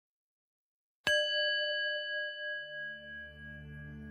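A single bell-like chime is struck about a second in and rings on, slowly fading. A low, sustained ambient music drone comes in beneath it about halfway through.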